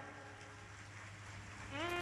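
A faint steady hum, then about 1.7 seconds in a held musical note slides upward and holds: the accompanying music starting up under the sermon.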